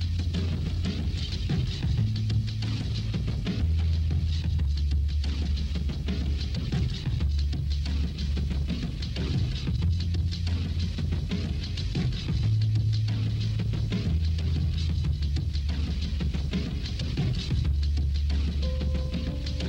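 A band playing an instrumental passage with no vocals: a prominent bass line steps between low notes every second or two, over steady cymbal ticks.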